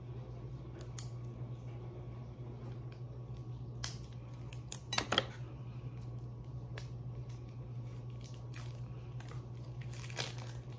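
Small clicks and light handling noises of beauty products and packaging being picked up and turned over, the loudest a short cluster about five seconds in, over a steady low hum.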